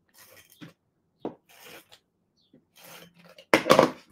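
An adhesive tape runner being drawn across paper pieces, with paper being handled around it. It makes a few short scratchy rasps, and a louder one about three and a half seconds in.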